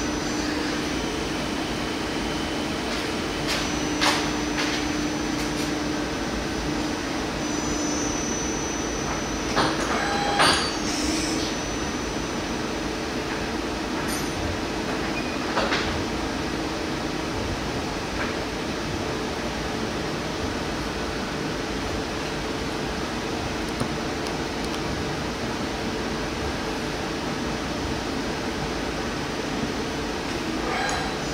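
Doosan Puma 2600 CNC lathe running with a steady machine hum and a constant low tone. The hum is broken by a few short knocks, about four seconds in, twice around ten seconds and again near sixteen seconds, as the tool turret moves and indexes.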